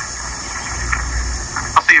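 Steady hiss and low rumble from a TV programme's soundtrack played through a television's speaker and picked up by a phone in the room. A man's voice starts near the end.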